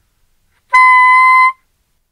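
Bb soprano saxophone playing a single held high D, fingered with the first palm key and the octave key (sounding concert C, about 1 kHz). The note starts a little under a second in, holds steady in pitch for just under a second, and stops.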